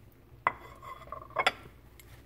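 A metal utensil clinking against dishware: one sharp clink about half a second in that rings on briefly, then two quick clinks about a second and a half in.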